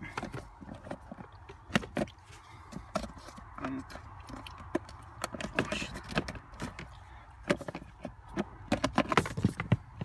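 Plastic fuse box cover under a van's dashboard being unclipped and pulled off by hand: a string of sharp plastic clicks and knocks, coming thickest near the end.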